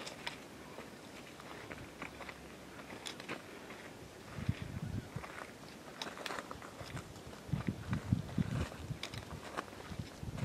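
Footsteps on a loose rocky trail: boots crunching and clicking irregularly on gravel and scree, with a few duller thuds about halfway through and again near the end.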